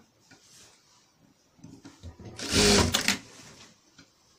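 Sewing machine running a short burst of stitching about two seconds in, lasting about a second.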